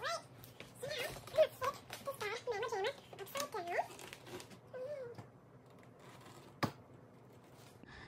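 A mountain bike being handled and turned upside down on a carpeted floor: light knocks and rattles, with faint high-pitched vocal sounds through the first half and one sharp click near the end.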